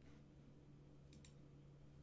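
Near silence with a faint steady low hum, broken a little past a second in by two quick clicks of a computer mouse in close succession.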